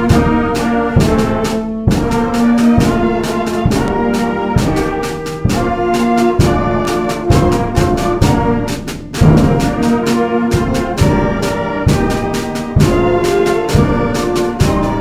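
A seventh-grade concert band playing a march, brass and woodwinds holding chords over a steady beat of bass drum and percussion, about two beats a second. The sound eases briefly just before a loud entry about nine seconds in.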